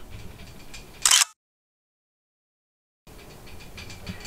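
Camera handling noise with a short, loud click or rustle about a second in, then about two seconds of dead digital silence where two clips are joined, after which faint outdoor background noise returns.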